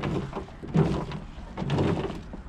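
Chopped turnip pieces rustling and knocking as they are scraped by hand out of the sheet-metal chute of an electric turnip chopper, in a run of irregular scrapes and light thuds.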